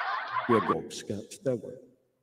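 Chuckling laughter: a dense burst of laughing that stops under a second in, then three or four short chuckles about half a second apart, fading out near the end.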